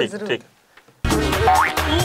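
A voice trails off, and about a second in a loud music jingle with drums cuts in suddenly, carrying a rising sliding tone: the TV show's segment-transition sting.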